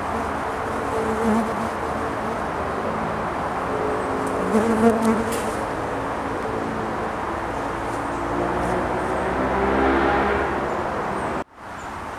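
A flying insect buzzing close to the microphone, its wavering drone rising and falling, over a steady outdoor background hiss. The sound breaks off suddenly near the end.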